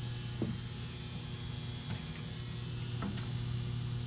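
Steady low electrical mains hum, with a few faint ticks.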